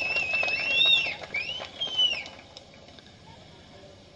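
Two human whistles from the audience, the first held steady with a wavering pitch and then sliding up and back down, the second a short rise-and-fall glide; both end about two seconds in, leaving a low background hum.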